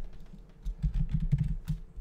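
Computer keyboard typing: a quick, irregular run of keystrokes as a word is typed, close to the microphone.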